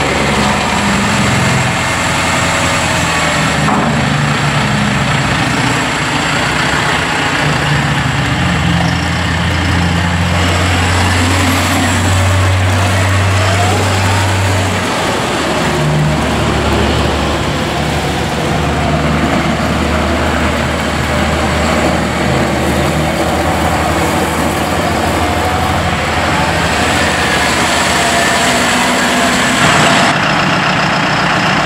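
John Deere 5085E tractor's turbocharged four-cylinder diesel engine running steadily as the tractor is driven, its note dropping lower about halfway through.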